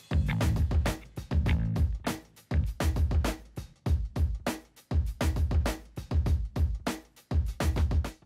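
Background music with a hard, bass-heavy beat of repeated hits.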